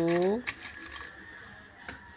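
An adult voice drawing out a counting word, rising in pitch as it ends, then faint light clicks and taps as small toys are handled and put into a cardboard box.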